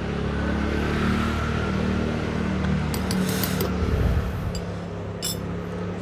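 A metal spoon clinking lightly against a tall glass of ginger tea a few times, mostly in the second half, over a steady low hum.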